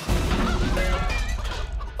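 Cartoon sound effects of a crowd of little robots rushing forward: a loud low rumble that starts suddenly, with short pitched tones over it, under background music.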